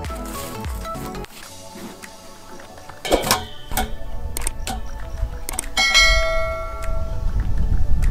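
Metal stand knocking and clanging as it is set down and shoved against a concrete well ring: a sharp clang about three seconds in, a few lighter knocks, and a ringing metallic clang about six seconds in that hangs on for over a second. Background music plays in the first second.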